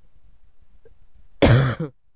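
A man coughing once, a short loud cough about one and a half seconds in.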